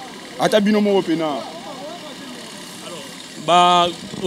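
Men's speech over steady busy-street background noise, with a lull in the middle; near the end one steady voiced note held for about half a second.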